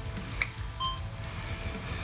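A faint click, then a short electronic beep about a second in, from a DJI Osmo Pocket 3 handheld gimbal camera as its controls are operated.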